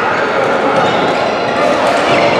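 Badminton rally in a large sports hall: racket strikes on a shuttlecock, over a steady chatter of many voices echoing around the hall.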